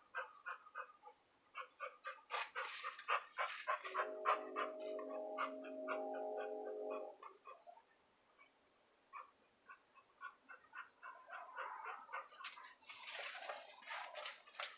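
Chickens clucking in quick, repeated short notes. A steady held tone lasts about three seconds in the middle, and a brief rustling burst comes near the end.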